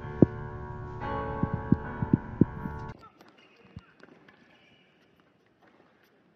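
A tennis ball bounced about six times on a hard court, sharp short knocks at an uneven pace, over background piano music. The music stops about halfway, leaving a hushed stadium that falls to near silence.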